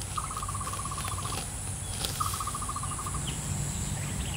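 An animal's rapid pulsed trill, given twice, each about a second long and about two seconds apart, over a steady high-pitched insect hiss and a low outdoor rumble.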